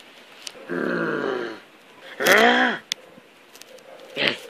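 A man's wordless vocal sounds: a held groan about a second in, then a louder, short cry that rises and falls in pitch.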